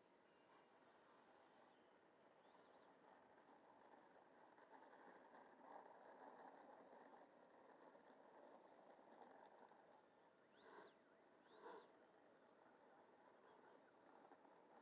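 Near silence: faint outdoor ambience, with two short faint chirps about a second apart past the middle.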